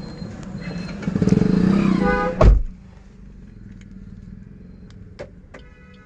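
Car cabin noise over a low hum from the idling Maruti Suzuki Ertiga. About two and a half seconds in there is one heavy clunk from the doors as the remote is tried, and after it a quieter low hum with a few faint clicks.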